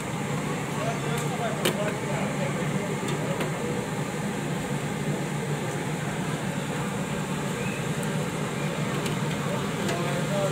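Street-stall ambience: a steady low hum under indistinct background voices, with one sharp click a little under two seconds in.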